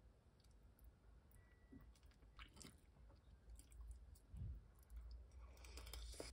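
Faint chewing of a mouthful of soft oatmeal cream risotto, with small wet mouth clicks and a slightly louder scrape near the end.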